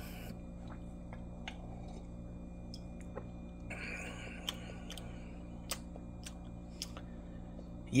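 Faint, scattered mouth clicks and lip smacks from someone tasting coffee, with a short breath about four seconds in, over a steady low hum.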